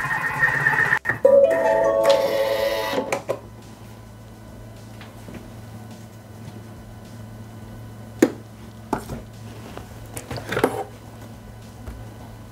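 A Bimby (Thermomix) food processor plays its short melody of held electronic tones about a second in, the signal that the cooking programme has finished. Then there is a low steady hum and a few sharp clicks as the lid and mixing bowl are handled.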